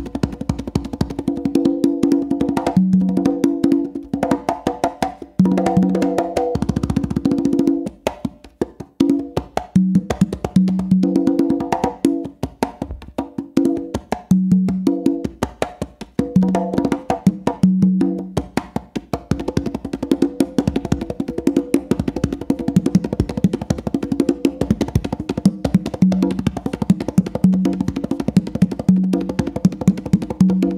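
Congas played by hand in a fast, continuous pattern of sharp slaps and ringing open tones, the lower and higher drum answering each other.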